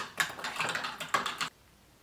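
A metal spoon clinking against a ceramic mug as a drink is stirred: a quick run of sharp clicks that stops about one and a half seconds in.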